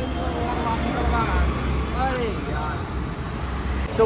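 Road traffic noise: a steady low vehicle rumble, with muffled voices over it.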